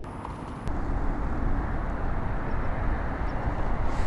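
Steady rushing outdoor noise with a fluttering low rumble, coming in suddenly and growing a little louder under a second in.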